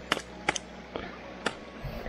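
Trekking pole tips clicking on wet rocks: four sharp clicks about half a second apart.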